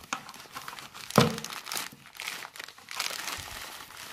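Crinkling, rustling handling noise of the monopod and its packaging being handled, with one sharp knock about a second in.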